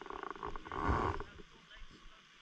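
A penguin calling: one raspy, pulsing bray lasting about a second, starting just after the beginning.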